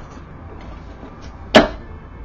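One sharp smack about one and a half seconds in, over a low steady hum.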